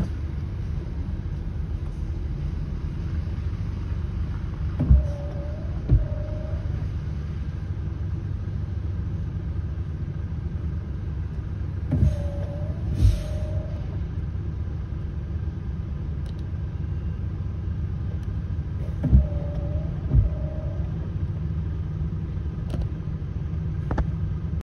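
Car driving, heard from inside the cabin: a steady low road rumble, broken three times, about every seven seconds, by a pair of short thumps about a second apart.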